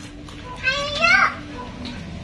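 A young child's voice: one brief, high vocal sound that rises in pitch, starting just over half a second in.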